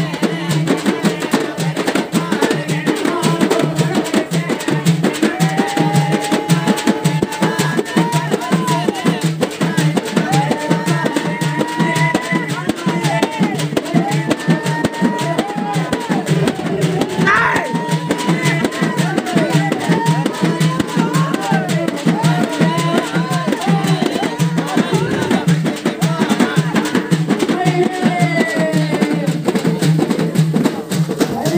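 Fast, unbroken drumming on large double-headed drums, with a wailing melody that rises and falls over the beat.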